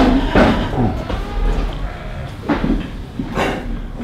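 Three sharp knocks and rattles, unevenly spaced, from goats bumping the steel panels of their pens.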